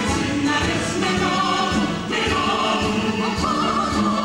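Chorus of voices singing together in a stage musical number, over band accompaniment with a steady drum beat.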